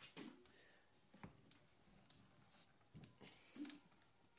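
Near silence: quiet room tone with a few faint knocks and clicks.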